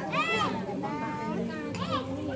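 Several people talking over one another, with a high-pitched voice calling out in rising and falling tones.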